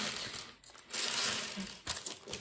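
Small plastic Lego bricks clattering and clicking against each other and the wooden tabletop as they are tipped out of a plastic bag. The clatter comes in two spells with a short lull about half a second in.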